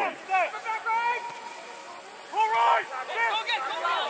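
Men's voices shouting short calls from a distance, in two spells with a lull a little over a second in.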